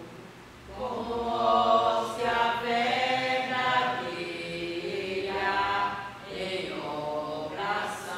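A woman singing a hymn from a book, in long held phrases that begin about a second in, with a short breath near the end.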